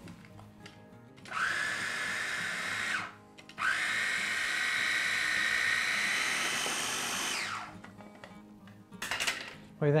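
Small electric food processor puréeing cooked mushrooms. It runs in two bursts, a short one of under two seconds and then a longer one of about four seconds, each with a steady motor whine, and the whine winds down as the motor stops.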